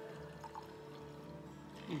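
Margarita mix pouring faintly from a stainless steel cocktail shaker into a champagne flute.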